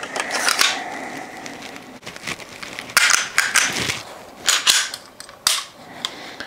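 Walther PDP pistol being reassembled, its steel slide going back onto the frame: a handful of sharp metallic clicks and clacks spread over a few seconds, with handling noise between them.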